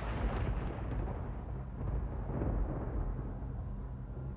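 Rolling thunder with a rain-like hiss, a sound effect in a film soundtrack heard over the loudspeakers of a large sanctuary, easing off slowly.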